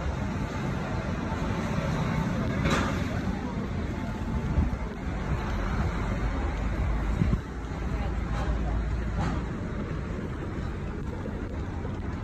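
Steady low rumble of buses and road traffic, with faint voices, and a short sharp noise a little under three seconds in. The low rumble drops suddenly about seven seconds in.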